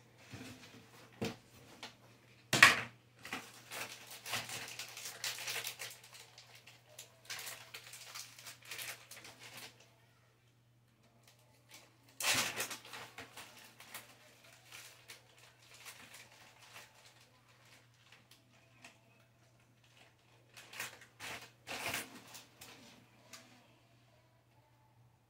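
Food packaging and plastic containers being handled at a cutting board: a stretch of plastic rustling and crinkling with a few sharp knocks, over a low steady hum.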